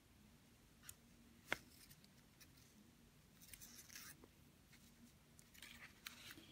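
Near silence with a few faint small clicks and light rustles from hands working a beading needle and thread through tiny glass Delica seed beads; the sharpest click comes about a second and a half in.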